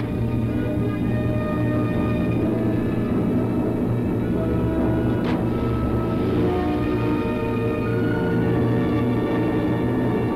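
Orchestral film score playing held chords over a steady low note, with a single short knock about five seconds in.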